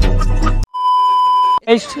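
Edited-in comedy meme music cuts off suddenly under a second in, followed by a steady, high electronic beep lasting about a second; a man's voice then begins near the end.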